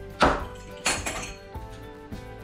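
Graham crackers cracking under a pizza cutter pressed down on a wooden counter: two crisp crunches about two-thirds of a second apart, the first louder. Background music plays underneath.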